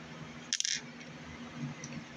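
A short scratchy rustle about half a second in, like the phone's microphone being brushed or handled, then only a faint steady low hum.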